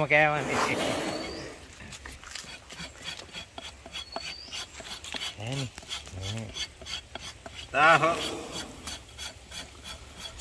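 A hand blade scraping and paring an elephant's toenail in many quick, repeated strokes.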